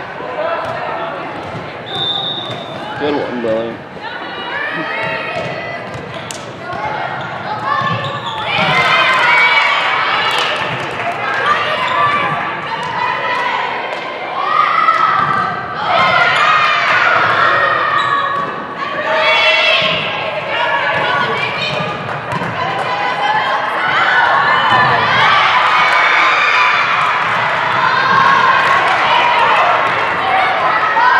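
Volleyball being served and struck during rallies in an echoing gym, sharp ball hits among many overlapping voices of players and spectators calling and shouting, which grow louder about eight seconds in.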